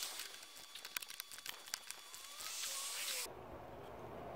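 Faint, irregular small metallic clicks and taps of a ratchet and wrench working the bolts of a stainless chimney pipe clamp as they are tightened. A short hiss comes near the end.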